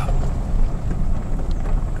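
Vehicle moving slowly, a steady low rumble of engine and road noise heard from inside the cab, with some wind on the microphone.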